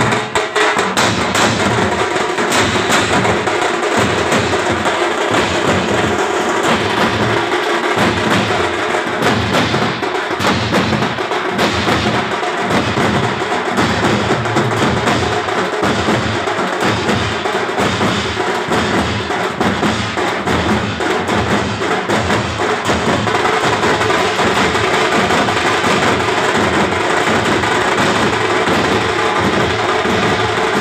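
A group of street drummers beating strapped-on cylindrical drums with sticks. They keep up a loud, fast, continuous rhythm with no pause.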